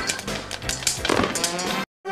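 A loud, chaotic jumble of voices and noise that cuts off abruptly just before the end.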